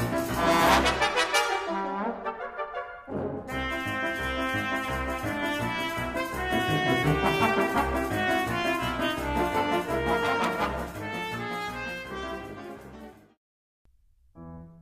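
Brass ensemble with trumpets and trombones playing lively music over a regular low pulse. The sound thins briefly about three seconds in, and the music cuts off suddenly near the end.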